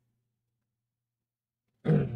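A pause with near silence, then a short, low, throaty vocal sound from a man near the end, lasting about half a second.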